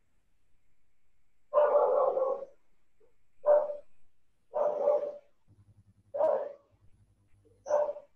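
An animal calling five times, in short separate calls about a second apart, heard through a video call's audio.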